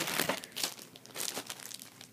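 Packaging crinkling and rustling as a visor is pulled out of it. A dense burst in the first half second is followed by scattered crackles.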